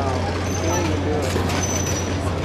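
A vehicle engine idling with a steady low hum, with indistinct voices over it.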